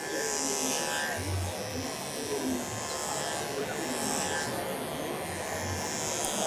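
Andis Pulse ZR II cordless clipper with a stainless steel comb attachment running steadily as it is pushed through a dog's coat.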